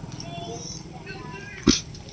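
Faint voices in the background, and one short, sharp, loud sound near the end.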